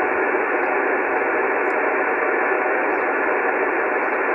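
Steady hiss of receiver noise from an Icom transceiver's speaker tuned to 144.268 MHz upper sideband, with no station audible on the frequency. The hiss is narrow and band-limited, as heard through the radio's SSB filter.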